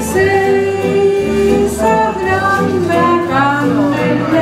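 A woman singing karaoke into a microphone over a backing track with a steady bass line, holding one long note near the start and then moving on through the melody.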